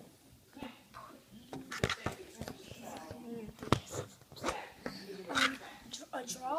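Handling noise from a clear plastic storage box and the phone filming it: a few sharp clicks and knocks, the loudest about two seconds in and again near four seconds, with faint voice-like sounds between them.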